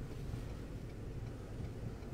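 Steady low hum and rumble of a vehicle moving slowly.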